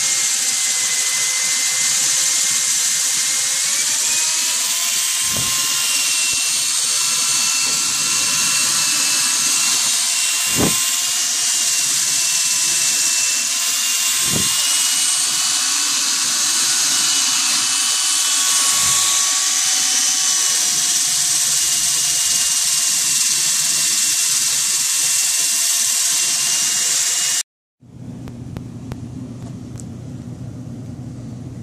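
Power drill spinning a fiberglass rod and rotary brush inside a flexible foil dryer vent duct: a steady motor whine that rises slightly in pitch a few seconds in, with a few brief knocks. It cuts off suddenly near the end.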